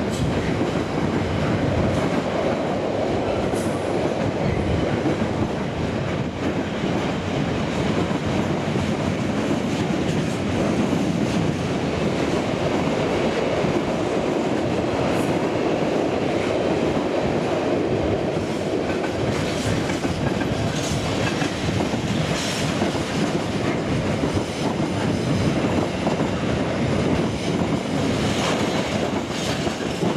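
Freight train's container wagons rolling past at speed: a steady loud rumble of wheels on rail, with clicks from the wheels that come thicker in the second half and a couple of brief high squeaks.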